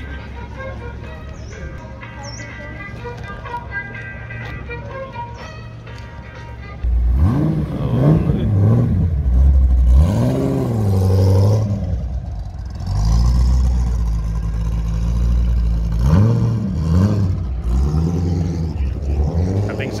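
A Ford GT40-style car's engine is revved about seven seconds in, the revs rising and falling in several blips as it moves off. Before that there is only a low hum with distant voices.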